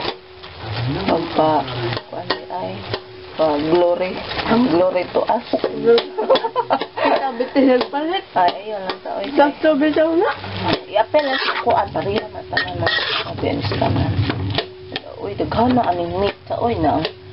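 Slotted spatula stirring and scraping ground meat as it fries in a wok, with sizzling and repeated clicks of the spatula against the pan. A voice carries on in the background.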